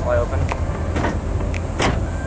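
A pickup truck's tailgate is pushed shut and latches with one sharp clunk near the end, over a steady low rumble of wind on the microphone.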